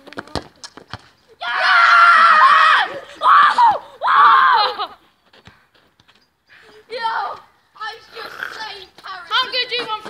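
A few sharp knocks in the first second as a football is kicked, then a boy's long loud yell and two shorter yells at the shot, which missed. Softer talking follows near the end.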